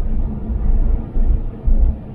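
Low rumble of road and engine noise inside the cabin of a 2007 Toyota 4Runner V8 driving on the highway, swelling and easing a few times.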